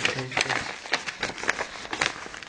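Plastic packaging around skeins of yarn crinkling and rustling as it is handled, a run of irregular crackles, with a brief bit of a woman's voice near the start.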